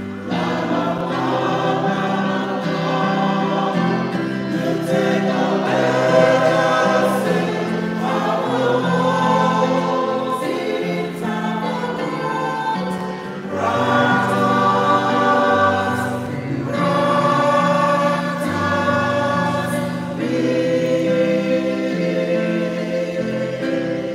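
A choir singing a hymn in held chords, the low notes moving every second or two.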